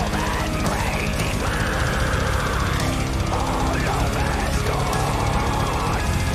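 Symphonic death metal song playing, loud and dense with no let-up.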